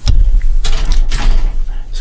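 Loud handling noise: a deep rumble with rustling, starting abruptly, as a hand moves over a wooden desk close to the microphone.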